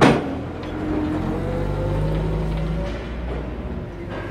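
Forklift running close by, its engine note rising and shifting as it manoeuvres, with a sharp bang right at the start.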